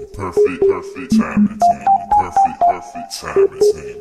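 Hip hop beat: short, clipped notes hopping among a few pitches in a repeating pattern, over regular drum hits.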